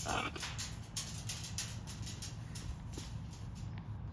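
A macaw gives a short call right at the start, followed by a run of sharp clicks and taps as the parrots' beaks and claws work a stone on a metal mesh table.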